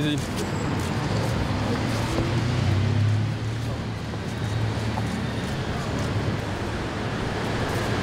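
City street ambience: steady traffic noise with a low engine hum that swells about three seconds in, under indistinct chatter from a crowd of people.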